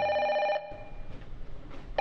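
White corded push-button desk telephone ringing with a steady electronic ring. One ring stops about half a second in, and after a pause the next ring begins near the end.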